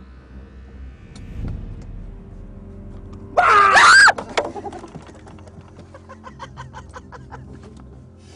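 A loud, high-pitched shriek about three and a half seconds in, under a second long, its pitch rising and then falling. Then comes a run of faint, quick clicks.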